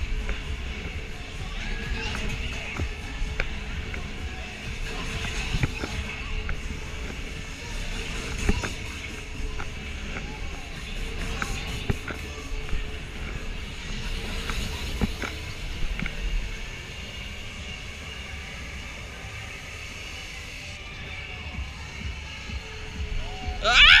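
Fairground music playing over the uneven rush and buffeting of wind on the microphone of a moving Miami Trip ride, with scattered knocks. Near the end a rider lets out a short shout.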